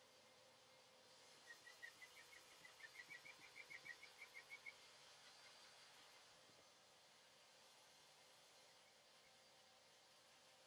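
Hand sanding of car primer with a mesh abrasive sheet on a sanding block, faint overall. About one and a half seconds in, the sheet starts squeaking: a quick run of short, high squeaks, about six a second and growing louder, which stops a little before the middle, over a soft rasping hiss from the strokes.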